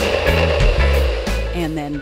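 NutriBullet personal blender running steadily as it blends a smoothie of frozen mango chunks, banana, oats and milk, with background music over it.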